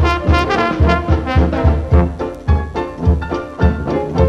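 Dixieland jazz band playing an instrumental passage from a 1970s LP, brass instruments in front over a steady low beat of about three a second.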